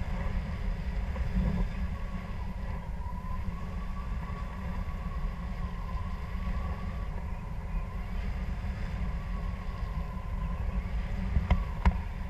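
Wind rushing over an action camera's microphone during a tandem paraglider flight, a steady low rumble, with a faint wavering high tone throughout and a couple of short knocks near the end.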